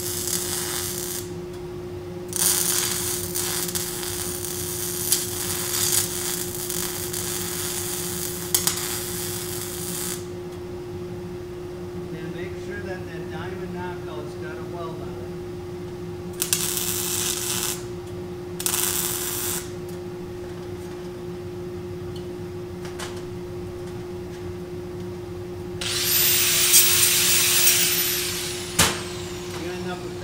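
Wire-feed MIG welding of a steel saw blade onto a shovel: the arc crackles and hisses in several bursts. The first long bead lasts about eight seconds, short tacks follow in the middle, and a louder burst comes near the end, all over a steady hum.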